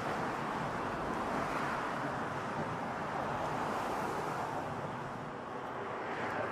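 Steady road traffic noise from cars driving along the suspension bridge's roadway beside the sidewalk, dipping slightly about five seconds in.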